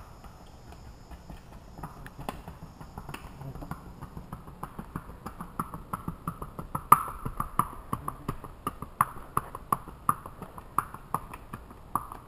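Hoofbeats of a Missouri Fox Trotter filly gaiting on a paved road: a quick, even clip-clop that grows louder as she comes closer and is loudest in the second half as she passes.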